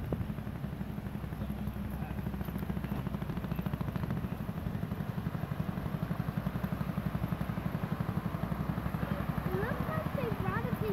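Vintage fire engine's engine running at low speed as the truck rolls slowly in, a steady rapid low exhaust throb that grows louder as it nears.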